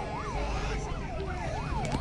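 Emergency-vehicle siren sounding in quick rising-and-falling sweeps, about two a second, over a steady low rumble.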